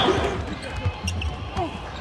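Basketball game sound in an arena: a ball being dribbled on the hardwood court, a few sharp bounces over a low crowd murmur and faint voices.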